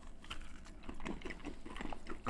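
Crunchy chewing of salted peanuts bitten off a corn cob: a run of small, irregular crisp cracks.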